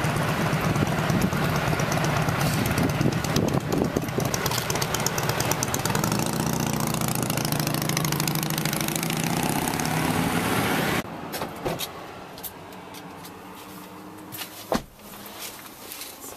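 Loud, steady motor-vehicle noise that cuts off abruptly about eleven seconds in. Quieter handling clicks and a single sharp knock follow.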